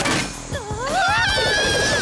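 Cartoon sound effects over background music: a thrown stone axe strikes a metal beam right at the start, then a high-pitched sound rises and holds for about a second near the end.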